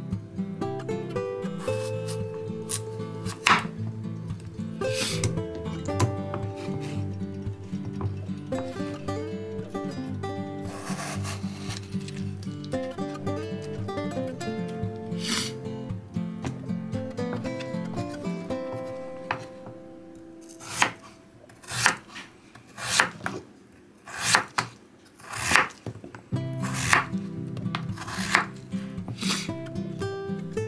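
Chef's knife slicing peeled potatoes on a wooden cutting board, each cut ending in a sharp knock of the blade on the wood. The knocks are spaced out at first and come in a quick run of about ten near the end, over background music.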